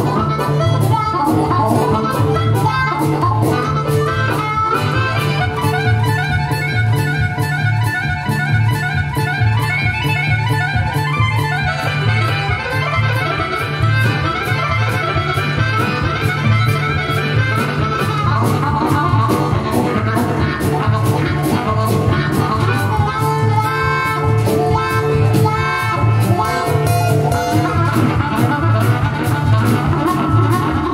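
Live harmonica solo over acoustic guitar and upright bass keeping a steady rhythm underneath.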